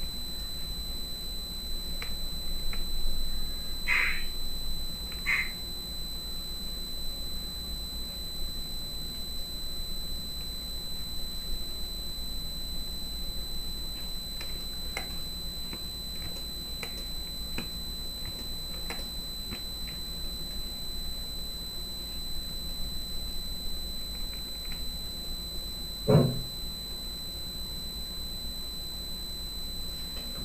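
Quiet room tone with a steady high-pitched electronic whine and a low hum, scattered faint clicks, and a single thump about 26 seconds in.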